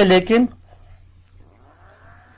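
A man's voice in the first half second, ending abruptly. After it comes a faint, steady low hum with a soft sustained tone.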